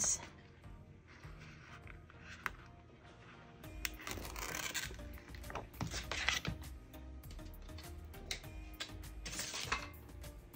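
Quiet background music, with a few short rustling, rubbing sounds from thin vinyl pinstripe strips being handled and peeled from their backing sheet, about halfway through and again near the end.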